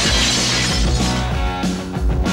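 Glass shattering with a sudden crash right at the start, the sound of the breaking glass fading over about half a second. Rock music plays underneath throughout.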